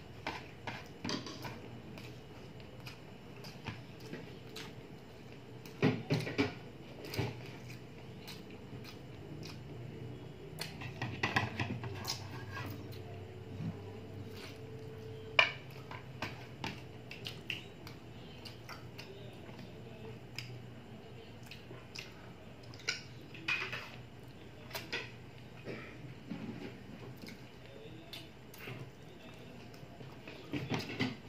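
Mouth sounds of someone eating chicken feet adobo by hand: chewing, with scattered small clicks and knocks of fingers and food against a ceramic plate. The sharpest knock comes about fifteen seconds in.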